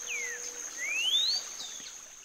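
Cinnamon-bellied saltator whistling a short phrase: a falling slurred note, then a longer rising one that sounds like a question. A steady high-pitched insect note runs underneath.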